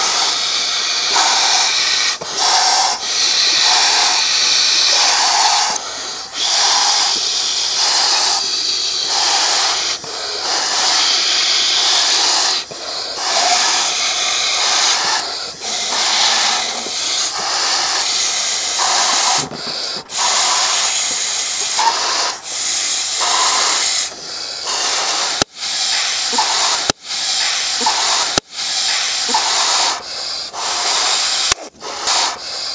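Several people blowing hard into latex balloons by mouth: a run of forceful breaths with air hissing into the balloons, about one blow a second.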